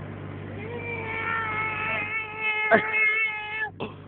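A man imitating a cat: one long, steady, meow-like wail held for about three seconds, with a short knock partway through.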